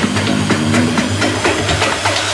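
Tech house DJ mix: electronic dance music with a busy run of quick, evenly spaced percussion hits over steady low synth tones, the deep bass thinned out.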